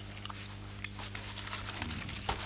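Quiet room tone: a steady low electrical hum with faint, scattered light clicks.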